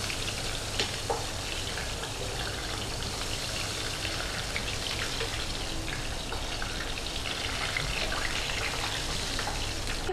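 Whole flour-coated red tilapia deep-frying in a wok of hot oil, sizzling and crackling steadily as oil is ladled over it. A couple of light clicks come about a second in.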